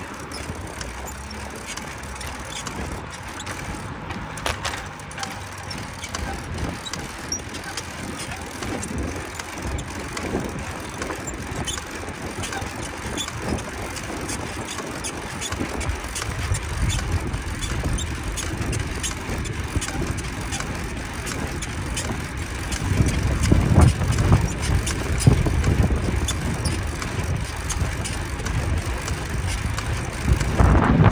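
Bicycle riding noise picked up by a handlebar-mounted camera: steady tyre and road noise with many small clicks and rattles. Wind rumbles on the microphone, growing heavier in the second half.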